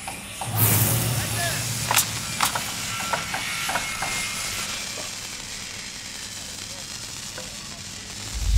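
Animated logo-reveal sound effect: a rush of noise swells in about half a second in, with scattered crisp clicks and small chirps over the next few seconds, then thins to a slowly fading hiss.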